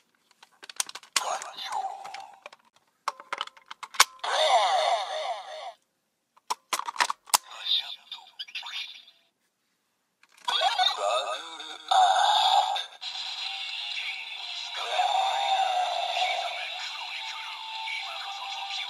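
Bandai DX Kamen Rider Ex-Aid toy played through its small built-in speaker. A few button clicks come first, then short bursts of electronic sound effects and recorded voice lines. From just past the middle it settles into continuous game-style music.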